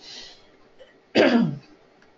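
A person clearing their throat once, about a second in, a short rough vocal burst that falls in pitch, after a faint breath.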